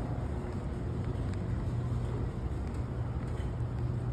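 Steady low rumble of road traffic, with a few faint footsteps on a concrete sidewalk.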